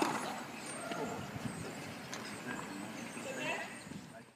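Outdoor tennis court ambience: faint distant voices, a sharp knock right at the start, and a few fainter scattered knocks of tennis balls.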